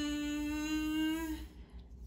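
A woman's voice humming one long note that slides up at the start, holds steady, and stops about a second and a half in. It is the drawn-out voicing of a letter sound, here the letter D.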